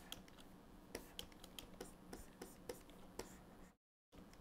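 Faint, scattered clicks and taps of a pen stylus on a graphics tablet over a low, steady hum. The audio cuts out completely for a moment near the end.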